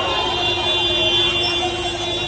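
A vehicle horn sounding one long, steady note over the noise of a jostling, chattering crowd.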